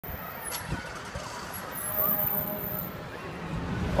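City street traffic noise, with cars running on the road and a brief rise as a vehicle goes by about two seconds in, and faint voices in the background.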